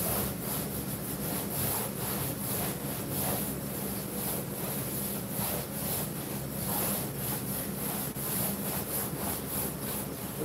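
Paint roller on an extension pole rolling wet screen paint across a flexible projector screen, in repeated back-and-forth strokes roughly once a second.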